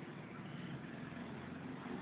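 Faint, steady background rumble and hiss with no distinct events.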